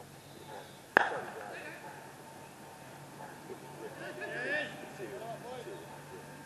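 A single sharp crack about a second in, a cricket bat striking the ball, with a short ringing tail; faint distant voices follow.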